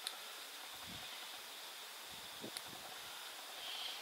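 Quiet steady background hiss with two small sharp clicks, one at the very start and one a little past halfway: bonsai scissors snipping juniper shoots.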